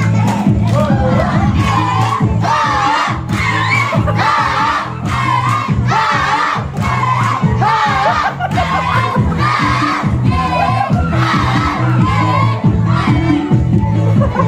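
Exercise dance music with a steady bass line, with a crowd of voices chanting in rhythm over it, a shout about once a second.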